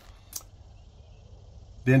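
Quiet pause with faint steady background noise and a single faint click about a third of a second in; a man's voice resumes at the very end.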